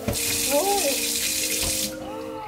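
Touch-sensor kitchen faucet running a thin stream of water into a stainless steel sink, then shut off abruptly near the end with a touch.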